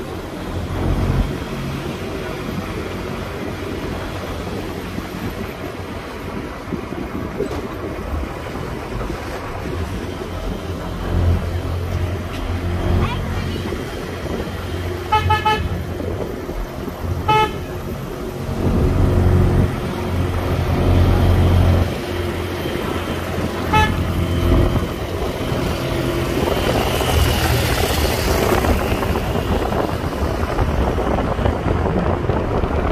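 A vehicle horn beeps short toots a few times, a quick double beep about halfway, another a couple of seconds later and one more near 24 seconds, over the steady engine and road rumble of a car driving through town traffic.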